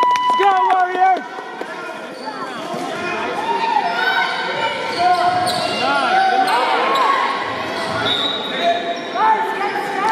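Basketball play on a hardwood gym floor: sneakers squeaking in many short chirps and a basketball bouncing. Voices call out, echoing in the hall.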